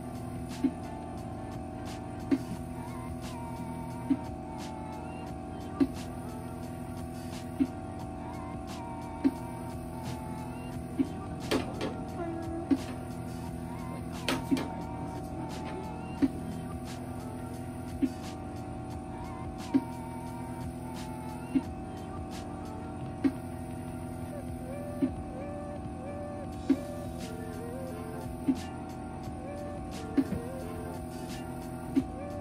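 Vacuum therapy machine running with a steady hum, its suction pulsing through the cups with a sharp click about every 1.75 seconds.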